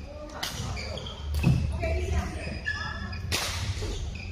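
Badminton doubles rally: a few sharp racket hits on the shuttlecock about a second apart, with short squeaks from shoes on the court floor in between.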